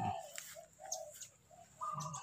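A bird calling: a run of short, low-pitched notes repeated every few tenths of a second, ending in a longer held note.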